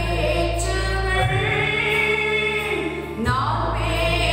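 A woman singing a Tamil Christian hymn into a microphone, holding long notes, with a steady low drone underneath.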